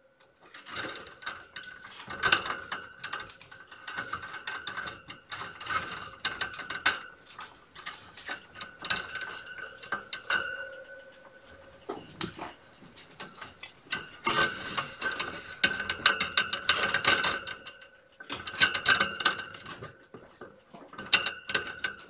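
Hardware on a light bar and its mount being handled and adjusted: bursts of rapid clicking, ratcheting and light rattling, with a few short pauses.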